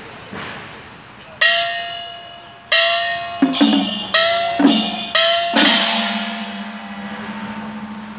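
Chinese gongs struck about eight times in quick, uneven succession: a higher gong whose pitch bends up at each stroke and, from about halfway through, a lower gong whose pitch bends down. The last stroke rings on and slowly fades.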